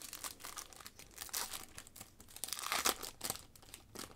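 Foil wrapper of a 2021 Panini Optic football hobby pack crinkling and tearing as it is ripped open, in irregular rustling bursts that are loudest about a second and a half in and again near three seconds.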